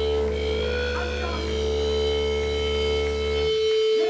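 Live band playing: a steady, droning sustained chord with a strong held note, over a low bass drone that cuts off about three and a half seconds in.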